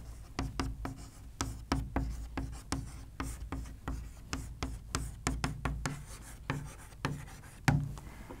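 Chalk writing on a chalkboard: a quick, irregular run of short taps and scrapes as a word is written out letter by letter.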